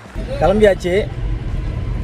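Steady low rumble of a car on the move, heard inside the cabin, with a man's voice speaking briefly about half a second in.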